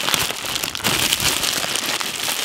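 Thin clear plastic wrapping crinkling and rustling as hands pull it off a cylindrical package, a dense run of small crackles.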